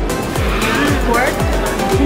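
Background electronic music with a steady kick drum about twice a second, with a short voice or melody line briefly over it in the middle.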